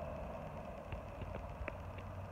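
Faint outdoor background with a low steady hum and a few soft, scattered ticks.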